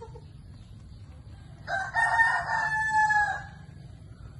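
A rooster crowing once: a single call of nearly two seconds, starting a little before halfway and trailing off with a falling end.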